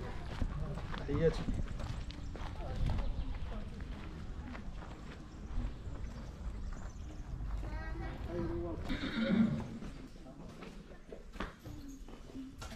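A horse whinnies about eight seconds in, with a long, quavering call, while people talk in the background.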